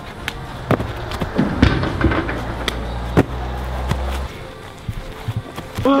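Music with a deep, steady bass note that stops about four seconds in, with a string of sharp knocks and thumps through it.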